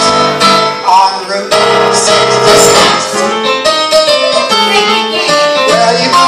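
Yamaha electronic keyboard in a piano voice playing an instrumental passage of a swinging blues tune, with a quick run of notes.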